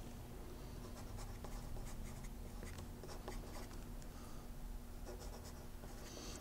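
Pencil writing on paper: faint, irregular scratching strokes as words are written out, over a faint steady hum.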